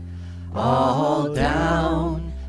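Church worship team and congregation singing a hymn over a sustained low instrumental note. Voices hold one note, then come back in about half a second in.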